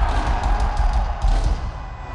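Amplified rock drum kit playing heavy bass drum hits with cymbal crashes over crowd noise, easing off near the end.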